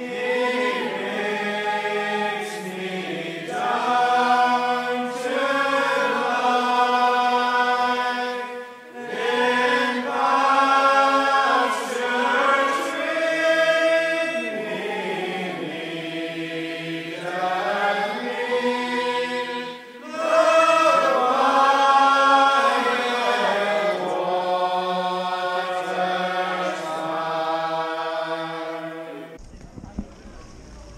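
Slow, chant-like singing voices: a sung melody in long held phrases with no beat, pausing briefly about nine and twenty seconds in, and cutting off just before the end.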